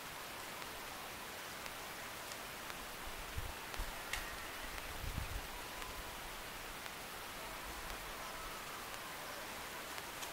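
Steady, faint outdoor background hiss, with a few short low rumbles about three and five seconds in.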